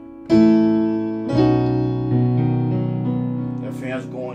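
Piano chords played on a keyboard and left to ring: a chord is struck about a third of a second in, deep bass notes join about a second later, and the harmony shifts as notes change partway through. A brief bit of speech comes near the end.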